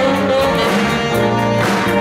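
Live jazz band playing: two saxophones playing over electric guitars, keyboard and a drum kit, with steady cymbal strokes.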